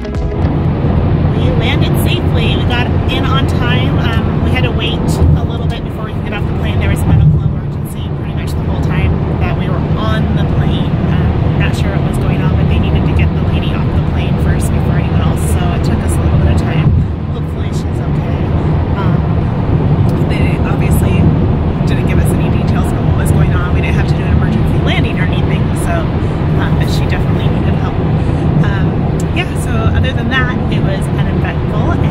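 Steady low rumble of a moving vehicle heard from inside its cabin, with indistinct voices through it.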